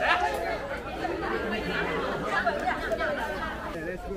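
Many people chattering at once, overlapping voices with no single speaker standing out.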